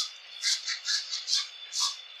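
Hands scrubbing thick shampoo lather through wet hair, a quick uneven run of wet squishes of the foam, about four a second.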